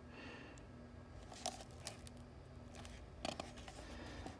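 A page of a hardcover picture book being turned by hand: soft paper rustling with a few light taps and crinkles, about a second and a half in, just before two seconds, and again a little after three seconds, over quiet room tone.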